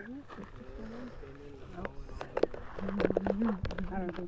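Indistinct voices of several people talking quietly among themselves outdoors, with a drawn-out low voice about three seconds in. Scattered clicks and rustles of handling close to the microphone.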